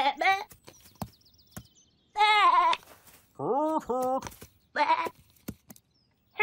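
Wordless cartoon animal voices: about four short bleat-like calls with gaps between them, some of them rising then falling in pitch, with faint light taps in the pauses.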